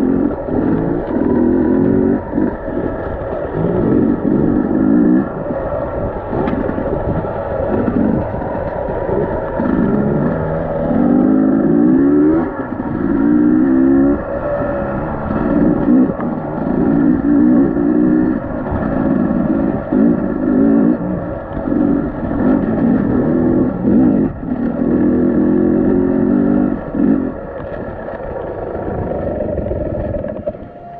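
Dirt bike engine on a rough trail, revving up and down in repeated short bursts as the throttle is worked. Near the end the revs settle lower as the bike slows.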